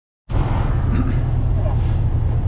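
Semi truck's engine and road noise droning steadily inside the cab at highway speed, cutting in suddenly a quarter second in.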